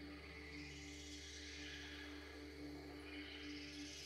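Quiet ambient electronic music played live: a sustained drone tone over a low steady hum, with a soft hiss that slowly swells and fades.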